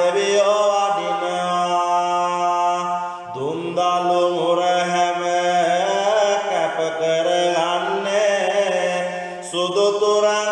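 A solo voice chanting Sinhala devotional verses (kolmura kavi to the deity Gambara) in long, drawn-out, slowly bending melodic phrases over a steady low drone. The voice breaks off briefly about three seconds in and slides into a new phrase.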